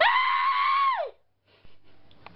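A shrill, high-pitched scream held for about a second and falling in pitch as it ends, followed by a brief silence.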